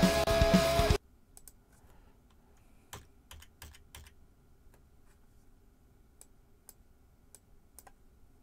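A drum cover recording, drum kit with a held guitar note, plays back and cuts off suddenly about a second in. After it come faint, irregular clicks of a computer keyboard, a dozen or so spread over the next several seconds.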